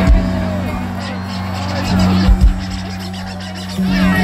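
Live metal band playing through a festival PA: bass and guitar hold a steady low note, with a few heavy drum hits and voices over it.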